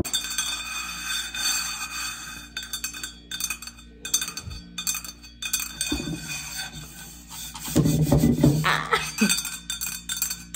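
Background music with steady tones, over a run of light clicks and taps from long press-on nails striking a metal water bottle. The taps are thickest about eight seconds in.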